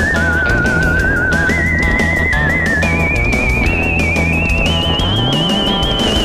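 Background music: a high, wavering lead melody that climbs in steps, over a bass line and a steady beat.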